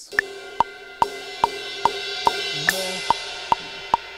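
Electronic drum kit cymbal struck at the start and again about two and a half seconds in, each hit washing out, over a metronome clicking about 2.4 times a second at 144 BPM with a higher accented click on the first of every six beats.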